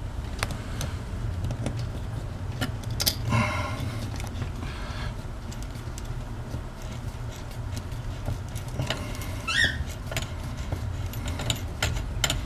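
Hand screwdriver driving a coarse-thread, self-starting screw through a metal mounting bracket into the wall, with scattered small clicks, scraping and metallic clinking from the bracket's steel band, and a short rising squeak late on, over a steady low hum.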